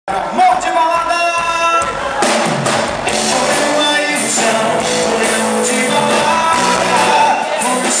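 Live band playing a song with a male lead singer, electric guitars, bass, keyboard and drums, amplified through a PA in a large hall.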